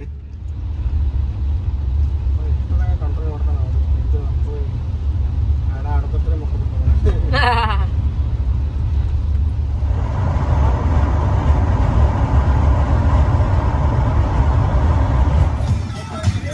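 Steady low rumble of a car driving, heard inside the cabin, with a few brief faint voices in the middle. From about ten seconds in a steady hiss joins the rumble.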